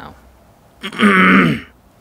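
A man clears his throat once, about a second in, a loud burst lasting about half a second.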